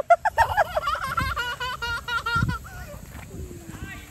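A young child's high-pitched wordless vocalizing, a long warbling squeal whose pitch wobbles quickly up and down, lasting about three seconds before it dies away.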